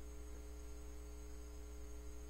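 Low, steady electrical hum with a faint hiss, the background noise of the recording setup.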